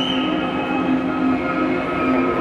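Concert intro music heard from backstage: a steady, droning held chord of several tones over a haze of crowd noise.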